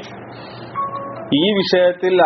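A man's lecturing voice, with a steady low background hum. For the first second or so there is only the hum; then he speaks again in a melodic, drawn-out intonation, about two-thirds of the way in.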